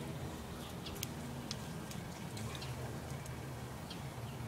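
Outdoor ambience: a steady low hum with a few short, high chirps scattered through it.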